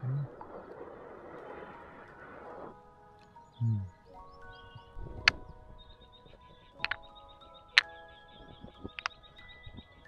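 Background music with chime-like tones. Over it, a breathy rush of air blown into the smoking hole of a drilled log for the first two and a half seconds, then a few sharp knocks as terracotta cups are set down on the log's wooden top.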